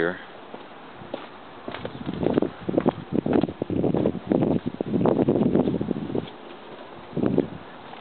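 Footsteps and rustling of someone walking along a dirt yard path, in uneven bursts of scuffing from about two to six seconds in and once more near the end.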